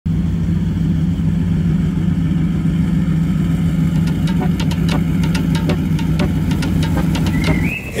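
Performance catamaran powerboat's engines idling with a steady low rumble. From about halfway a quick series of sharp ticks runs over it.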